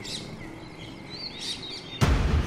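Birds chirping over low outdoor background noise: a short call just after the start, then a quick cluster of rising-and-falling chirps about one and a half seconds in.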